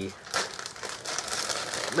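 Clear plastic bag crinkling and rustling in short, irregular crackles as a sprue of plastic model-kit parts is handled inside it.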